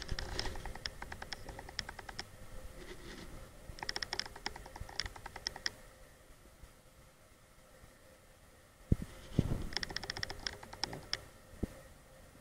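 Bursts of rapid light clicking and rattling from metal turbocharger parts being handled, with a couple of single thumps near the end.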